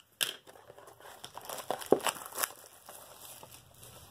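Cardboard blaster box of trading cards being torn open by hand: crinkling with a few sharp tearing strokes, the box coming open easily.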